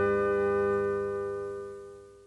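Final held chord of a country band recording with steel guitar, ringing steadily and fading away to near silence by the end.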